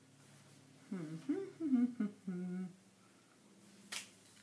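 A woman humming a short tune of a few gliding notes, starting about a second in and lasting under two seconds. A sharp click near the end.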